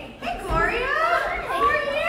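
Speech only: high-pitched, animated women's voices exclaiming, starting about half a second in.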